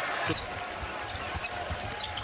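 Basketball being dribbled on a hardwood court, short thuds over the steady noise of an arena crowd.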